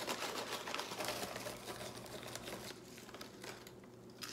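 Plastic pouch of freeze-dried strawberries crinkling and rustling as a hand reaches in and pulls out pieces, a rapid run of light clicks that thins out near the end.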